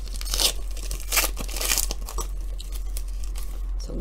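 A foil trading-card pack wrapper being torn open and crinkled, in a few short rips within the first two seconds, followed by quieter rustling.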